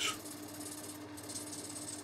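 A small metalworking lathe running while a tool faces the end of a brass bar: a faint steady hum under a soft hiss.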